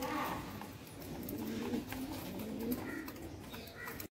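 Fantail pigeons cooing: low, wavering coos right at the start and again for about a second and a half through the middle.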